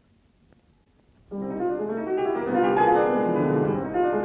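Solo classical piano from a 1951 mono recording transferred from LP: a moment of quiet record surface with a faint click, then the piano comes in suddenly about a second in with a full, loud chord and plays on in a dense, many-noted texture.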